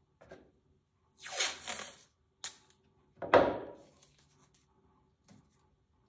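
Masking tape pulled off the roll and torn in two short ripping bursts, the second louder, with a light click between them.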